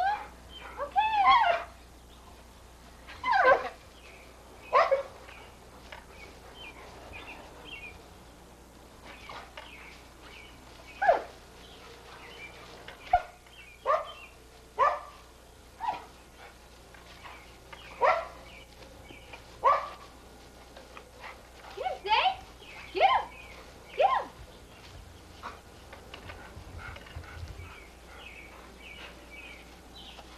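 A pit bull barking in excited play while chasing soap bubbles: about a dozen short, sharp barks, each dropping in pitch, coming singly or in pairs with pauses of one to several seconds.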